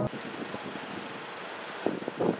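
Wind on the microphone over faint outdoor ambience: a steady hiss, with one short louder sound near the end.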